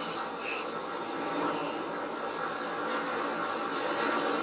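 Steady howl of blizzard wind from the episode's soundtrack, played back into a small room.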